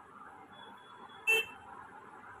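A single short horn toot about a second in, over a steady background hiss.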